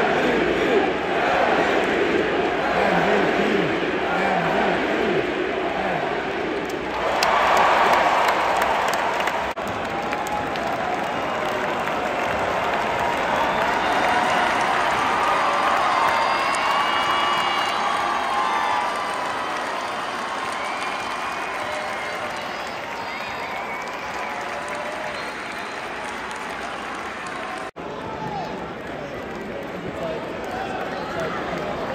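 Basketball arena crowd cheering, clapping and shouting, with a louder surge of cheering about seven seconds in.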